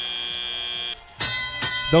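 Electronic field signal tones over the arena sound: a steady buzzing tone cuts off about a second in, and a ringing, bell-like tone starts just after it and fades. They mark the hand-over from the autonomous period to driver-controlled play, when the match clock starts running down from 2:15.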